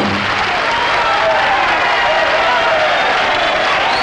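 Studio audience applauding at length, a dense steady sound of clapping with some voices in it. The band's music fades out just after the start.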